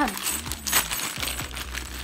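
Loose metal screws and bolts clinking together inside a small plastic bag as it is picked up and handled; the loudest clink comes a little under a second in.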